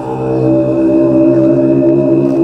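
A Buddhist mantra chant sung to music, the voice holding one long steady note that swells louder about half a second in.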